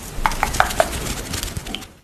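Close-miked ASMR clicking sounds: a quick run of about five sharp clicks in the first second over a soft rustling hiss, fading out near the end.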